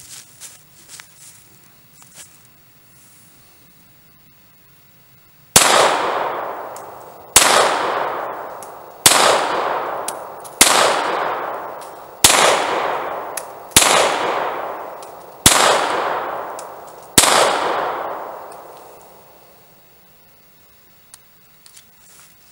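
Eight shots from a Beretta Model 70S .380 ACP pistol, fired at a slow steady pace about one and a half seconds apart, starting about five seconds in. Each sharp report trails a long echo that fades before the next; a few faint clicks come before the first shot.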